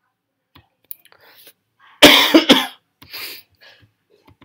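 A person coughing: a loud fit of a few quick coughs about halfway through, then a softer cough just after.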